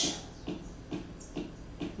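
Faint regular ticking, about two ticks a second, with the end of a woman's words at the very start.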